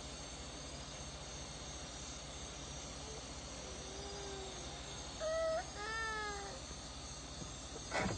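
Steady drone of night insects, with a few short, high-pitched whimpering cries that rise and fall about four to six and a half seconds in.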